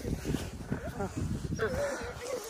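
Siberian husky vocalising in short wavering whines, with a longer wavering whine starting near the end.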